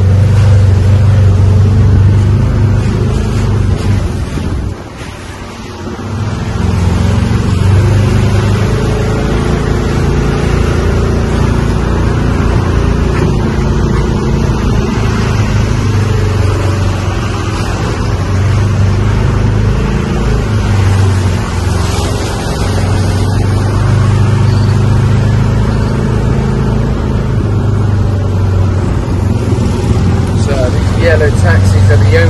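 Small open-sided cart's engine droning steadily as it drives, with wind and road noise. The drone drops away briefly about five seconds in, then picks up again.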